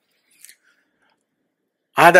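A pause in a man's talk: near silence, broken only by one faint, brief click about half a second in.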